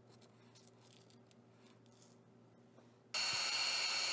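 A handheld craft heat gun switches on suddenly about three seconds in and runs with a steady blowing hiss and a high steady whine, heating embossing powder sprinkled over wet paint.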